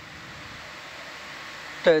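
A steady background hiss with no distinct events, growing slightly louder; a voice starts near the end.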